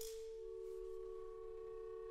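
Long, nearly pure held notes from the instruments of a contemporary chamber ensemble: one steady note throughout, joined about half a second in by a slightly lower note and a fainter higher one.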